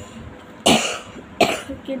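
A boy coughs twice, two harsh bursts under a second apart, the first longer than the second.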